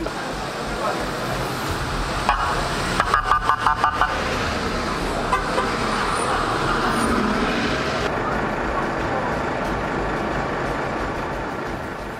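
Traffic of idling and moving emergency and police vehicles, with a vehicle horn giving one short toot and then a quick run of about seven short toots about three seconds in.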